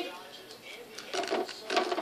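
Faint, irregular clicks and taps of plastic wrestling action figures being handled and knocked about in a toy ring.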